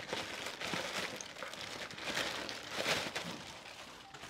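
Plastic courier mailer bag rustling and crinkling as a boxed phone is pulled out of it by hand, in uneven rustles that swell a few times.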